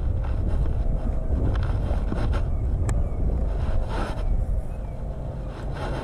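Low rumble of wind buffeting the microphone, with a single sharp click about three seconds in.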